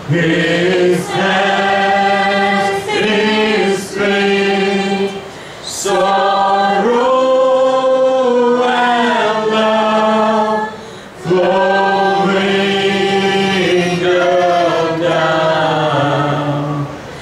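A worship group singing a slow worship song together, female and male voices, in long held phrases with brief breaks between them.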